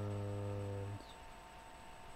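A man's voice drawing out one syllable on a long, steady, slightly falling note that stops about a second in, followed by quiet room tone with a faint steady high-pitched electrical whine.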